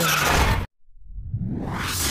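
Intro sound-effect whooshes: a loud whoosh cuts off abruptly, and after a brief silence a second whoosh swells up, rising in pitch toward the end.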